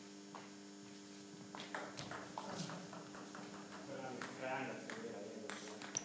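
Celluloid/plastic table tennis ball clicking off bats and the table during a rally: sharp, irregular clicks a few times a second that begin about a second and a half in. A steady low hum sits underneath.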